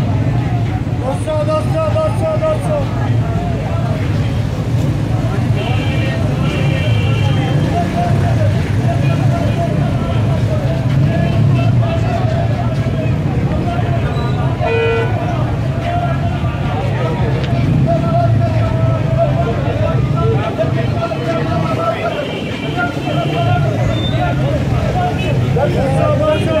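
Dense chatter of a packed street-market crowd, many voices overlapping without a break. A short vehicle horn toot sounds once about fifteen seconds in.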